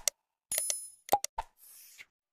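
Subscribe-button animation sound effects: sharp mouse clicks, some in quick pairs, with a short ringing ding about half a second in and more clicks after a second.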